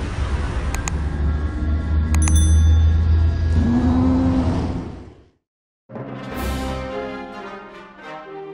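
End-card sound effects: a deep rumble, like a spacecraft lifting off, runs under a click about a second in and a click with a short ringing chime just after two seconds, then fades out around five seconds. After a brief silence, a whoosh leads into brass theme music.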